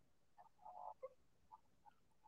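Near silence: room tone with a few faint, brief sounds, the first ones about half a second to a second in.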